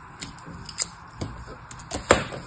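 A blade scraping across kinetic sand packed in a plastic mould, levelling off the top, with a series of short crisp crunches.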